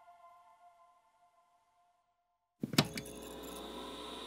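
Soft ambient synth music fading out into silence. About two and a half seconds in, a sharp glitchy electronic click sets off a steady low electronic hum with a faint high tone over it.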